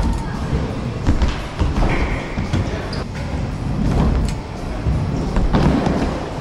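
Trick scooter's wheels rolling over wooden skatepark ramps with a steady rumble, broken by sharp knocks of the wheels and deck hitting the ramp.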